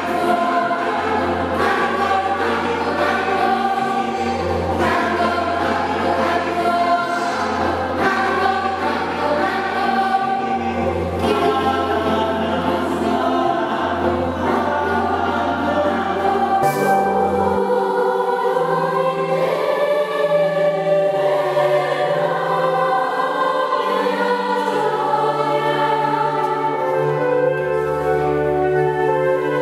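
Children's choir singing a piece with keyboard accompaniment. Deep bass notes sound until about two-thirds of the way through, then the accompaniment's lowest line moves higher.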